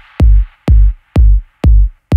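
Techno track stripped down to a bare four-on-the-floor kick drum, about two beats a second, as the track winds down; a high hissing layer fades out early on, leaving the kick alone.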